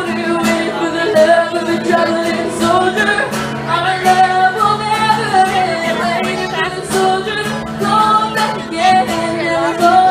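A woman singing a slow country ballad into a microphone, holding and sliding between long notes over acoustic guitar accompaniment.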